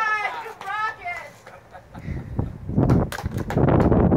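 A high-pitched voice speaks briefly at the start. From a little before three seconds in, a loud, rough rushing noise takes over and lasts to the end.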